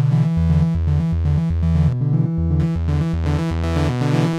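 Novation Peak synthesizer playing a looping sequence of low notes, about two and a half a second, from a single oscillator on a user wavetable. The waveform is being redrawn live from a sine into a jagged shape, so the tone sounds buzzy and full of overtones.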